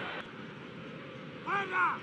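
Steady crowd noise of a football stadium heard through the TV broadcast, dipping slightly a moment in, with a brief word from the commentator near the end.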